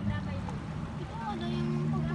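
Indistinct voices talking over a steady, low motor drone whose pitch shifts about halfway through.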